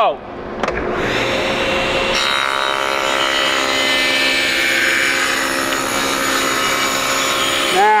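SawStop table saw switched on with a click, its motor coming up to speed within a second to a steady whine, then its blade ripping a board lengthwise into a narrow strip, the cutting noise joining in about two seconds in and running on until near the end.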